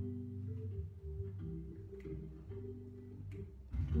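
Blues recording playing at moderate volume, with sustained, held organ chords in the low register that change every second or so.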